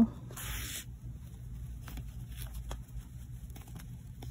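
Faint rustle and light ticks of yarn and a threading needle being worked through crocheted stitches, with a brief hiss about half a second in.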